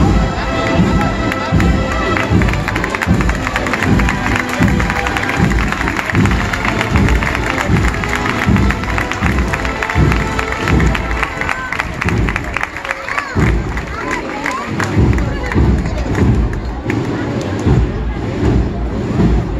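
Cornet-and-drum processional band (agrupación musical) playing a march, with a steady drumbeat and held brass notes that fade out midway, over the voices of a crowd.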